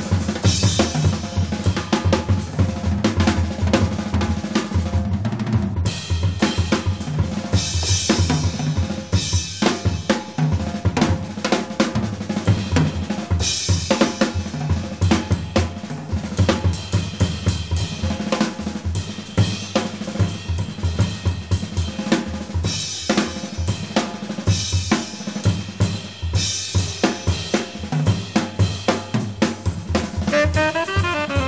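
Jazz drum kit played busily on snare, bass drum, hi-hat and cymbals, with bright cymbal surges every few seconds.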